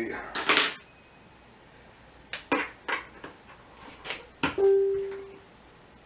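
Small metal still fittings clicking and clinking as they are handled at a sink, about six sharp knocks in the second half, the last leaving a short ringing tone. A brief hiss comes just before, near the start.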